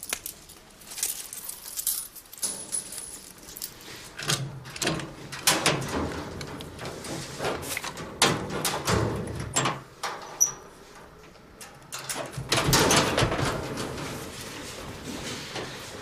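Keys and a padlock being worked on a metal door's hasp: a run of metallic clicks and rattles, then a louder, denser clatter about twelve seconds in.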